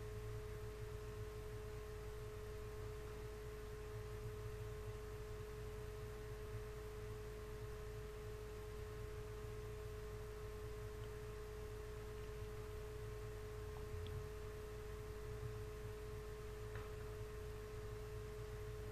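Steady background hum with a constant mid-pitched tone over it, unchanging throughout.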